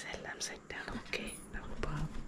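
A man whispering in Malayalam, hushed speech close to the microphone.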